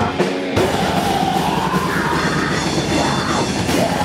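Live heavy rock band playing loud, with bass guitar, guitars and drum kit. The bass and drums cut out for about half a second at the start, then the full band comes back in.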